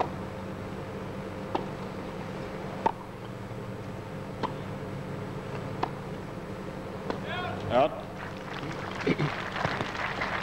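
Tennis ball struck back and forth by rackets in a rally: four sharp hits about a second and a half apart, over a steady hum. The rally ends about seven seconds in, followed by voices.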